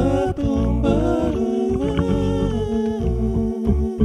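Looped a cappella vocal music: a man singing and humming into a microphone over layered voice loops played from a Boss RC-505 loop station, with a deep rhythmic bass line underneath.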